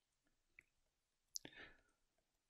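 Near silence with faint taps and clicks of a stylus writing on a tablet screen. The clearest click comes a little past the middle, followed by a brief soft noise.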